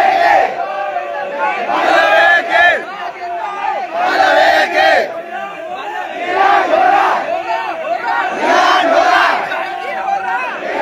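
A crowd of men shouting together, the voices rising in loud surges about every two seconds.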